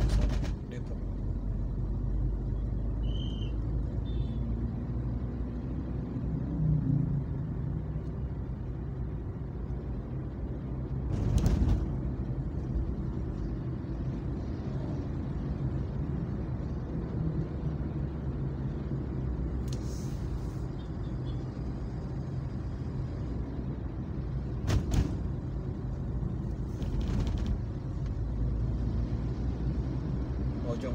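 Steady low rumble of a car driving in town traffic, road and engine noise, broken by a few brief knocks, the loudest about eleven and twenty-five seconds in.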